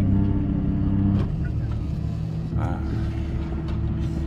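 An engine running steadily with a low drone, which steps down in pitch and level about a second in.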